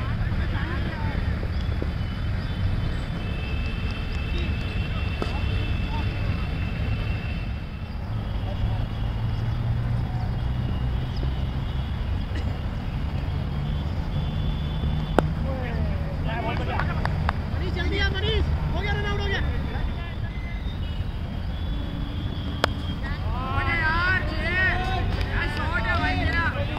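Open-air cricket ground with a steady low rumble; a single sharp crack of bat hitting ball about fifteen seconds in, followed by players' shouts and calls, with more voices near the end.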